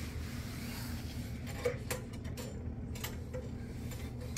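Faint rubbing and a few light clicks from a phone being handled and moved, over a steady low room hum.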